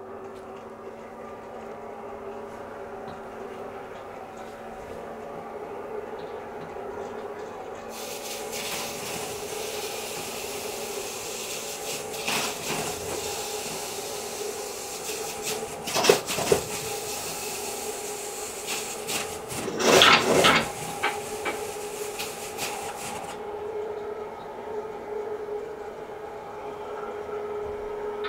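Motorised floor-rising 120-inch ALR projector screen running on its electric motor, a steady hum as the screen rises out of its case. A rushing noise joins from about a third of the way in until near the end, with a couple of louder knocks past the middle.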